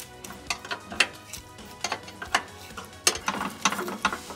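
Hand wrench working the nut off a steel carriage bolt on an RV landing gear jack mount: irregular metallic clicks, with a quicker run of clicks about three seconds in.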